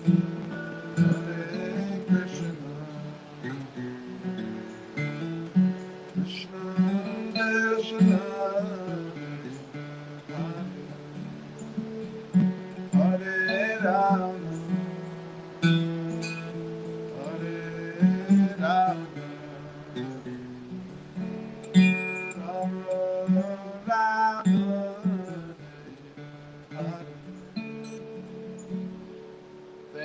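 Steel-string acoustic guitar playing a slow tune, with a steady pattern of low notes under a higher melody that rises and falls.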